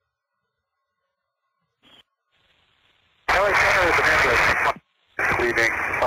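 Recorded air traffic control radio: near silence, a short click about two seconds in and a faint hiss, then from about three seconds a loud, noisy radio voice transmission that breaks off briefly and comes back.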